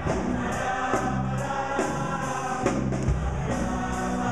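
High school show choir singing in harmony with a live pop band; a drum kit keeps a steady beat with cymbal strokes about two to three times a second.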